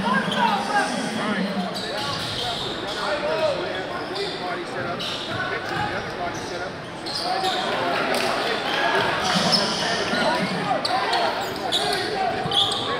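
Crowd voices in a large gym, with a basketball being dribbled on the hardwood court. A low steady tone sounds through the first two seconds or so.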